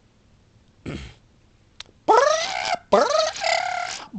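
A man's voice doing a creature-call impression: a short breathy sound about a second in, then two long, loud wailing cries that rise in pitch.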